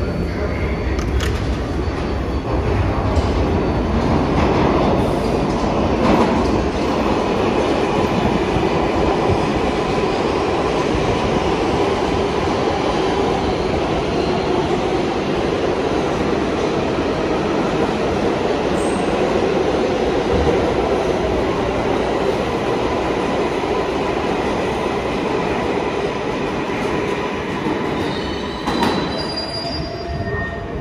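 An MTA R188 subway train departing the station and running past along the platform: a loud, steady rumble of wheels on rail with steady whining tones over it, easing near the end as the last car clears.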